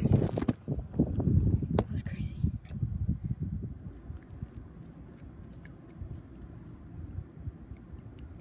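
Handling noise of a phone camera being moved and set down: knocks and scrapes over the first few seconds. After that comes a low, steady background rumble with a few faint clicks.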